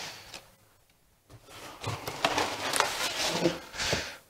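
Handling noise from packaging: plastic wrap rustling and a cardboard box being shifted, with scattered knocks. The sound drops out briefly about half a second in.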